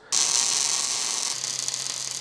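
MIG welder arc crackling steadily as weld is laid into the drilled holes of a crankshaft counterweight, with a steady hiss that eases slightly about halfway through.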